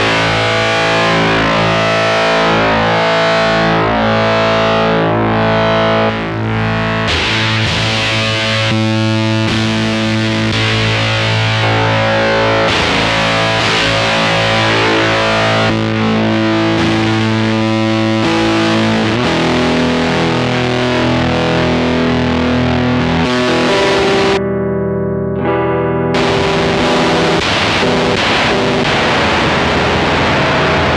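Electric guitar played through a Stone Deaf Rise & Shine fuzz pedal: held, heavily fuzzed chords and notes ringing out one after another. About three-quarters of the way through the sound briefly turns dull, losing its bright top, then returns.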